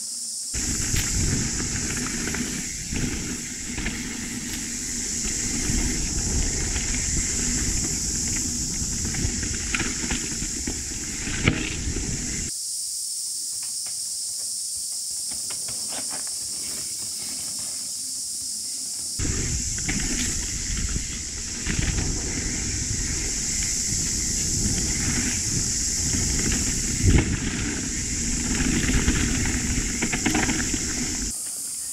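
Mountain bike riding along a dirt forest trail, heard as rumbling wind and rattle on the camera's microphone with scattered knocks, over a steady high-pitched hiss. The rumble drops away for several seconds in the middle, leaving mostly the hiss.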